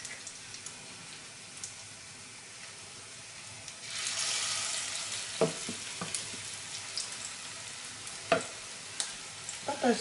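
Breadcrumb-coated carrot patty frying in hot fat in a pan, a steady sizzle that turns much louder about four seconds in as a patty goes into the fat, then eases off. A few sharp knocks come later.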